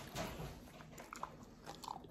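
A dog chewing a training treat: a few faint, short crunches.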